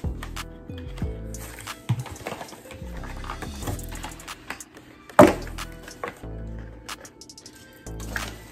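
Instrumental beat with a deep, steady bass line, over light rustling and clicking as boxed incense packets are handled. A brief loud sound stands out about five seconds in.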